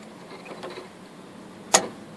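Hands working the plastic electrical connector on a car's in-tank fuel pump assembly: faint plastic rustles and small clicks, then one sharp click near the end.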